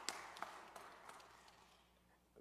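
Scattered audience applause, a few claps standing out, dying away to near silence.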